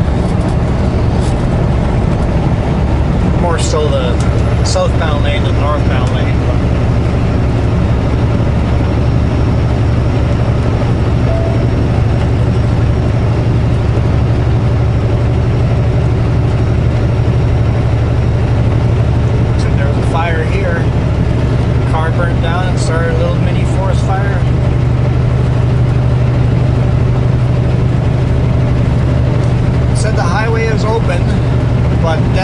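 Semi truck's diesel engine running steadily at highway cruising speed, a constant low drone with road noise heard from inside the cab.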